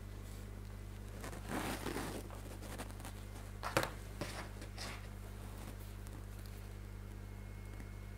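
Faint rustling of yarn and fingers handling a small crocheted piece, with one light click a little under four seconds in as the crochet hook is set down on the table, and a couple of softer ticks after it. A steady low electrical hum runs underneath.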